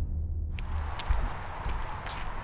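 Footsteps on a wet, leaf-strewn path, one step about every half second to a second, over a steady hiss that starts about half a second in.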